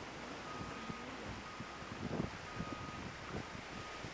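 Wind buffeting the microphone over waves washing against a rock wall: a steady, fairly faint noise.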